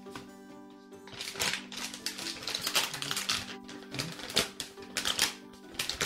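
Rapid, irregular clicking and crackling that starts about a second in, over steady background music.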